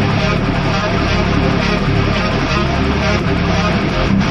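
Heavy metal backing track with the drums taken out: loud, heavily distorted electric guitars and bass guitar playing a dense, sustained riff, with no drum hits.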